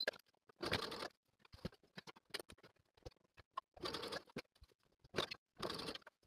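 Faint rustling and scratching of silky lining and twill fabric as hands guide them under a sewing machine's presser foot. It comes in three short patches, with scattered light clicks between them.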